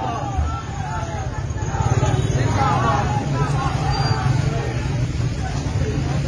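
A crowd of men shouting slogans such as "Zindabad", many voices overlapping, over a steady low rumble.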